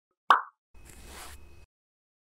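Logo-intro sound effect: a single short pop, then a soft whoosh lasting about a second that stops cleanly.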